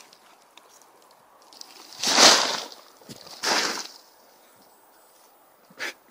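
A folded pop-up throw tent tossed into the air: two short rustling whooshes of its fabric and spring hoops, the first and louder about two seconds in, the second about a second later. The tent does not spring fully open.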